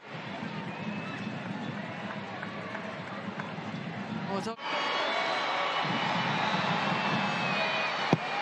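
Stadium crowd at a soccer match, a steady din of many voices with scattered shouts. About four and a half seconds in there is a sudden break, and after it the crowd is somewhat louder.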